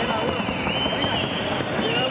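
Rapid, even patter of hooves as a Paso Fino mare gaits in the quick, short-stepping paso fino gait, a dense stream of small crackling strikes with no pauses.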